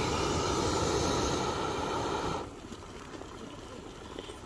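Backpacking gas-canister stove burning with a steady rushing hiss under a pot of boiling water, then cut off abruptly about two and a half seconds in, leaving a much quieter background.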